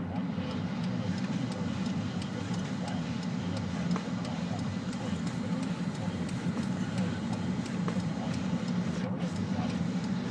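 Jeep Liberty's engine and tyres droning steadily, heard from inside the cabin while driving slowly on a snow-covered road.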